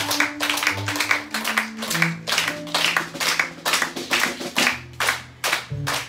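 Hands clapping in a steady rhythm, about three claps a second, over a few held low instrument notes that stop near the end.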